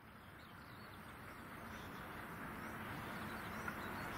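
A vehicle approaching along the railway line: a steady rumble that grows louder, with a few faint bird chirps.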